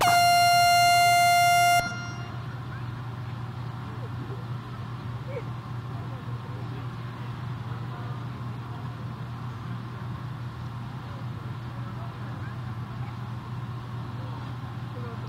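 Show-jumping arena start buzzer: one steady electronic tone lasting nearly two seconds, the signal for the next rider to begin her round. A steady low hum of arena ambience follows.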